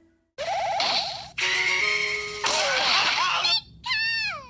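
Soundtrack of a short logo intro: a string of electronic music and sound effects, with a wobbling tone, held notes and a crashing noise, then falling swoops near the end.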